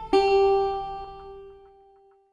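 Closing notes of an instrumental film score: a single plucked guitar note is struck about a tenth of a second in, rings and slowly fades away, with a few soft notes under it.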